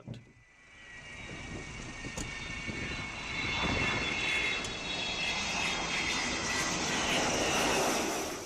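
Avro Vulcan bomber's four Olympus turbojets in a low flypast: a jet roar that builds over the first three seconds and then holds loud, with several high whining tones riding above it.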